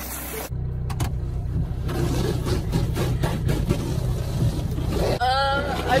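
A car's engine running steadily, heard from inside the cabin, while a hose sprays water over the outside of the car.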